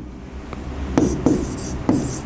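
A marker writing on a board: a few short taps and scratchy strokes as letters are drawn, starting about a second in.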